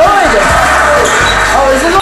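Music with voices over basketball game sound, with the low thud of a basketball bouncing on a gym floor about half a second in.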